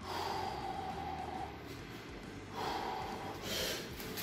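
A man breathing hard through his nose as he sets up over an atlas stone, bracing for a 160 kg lift, with a sharper breath near the end.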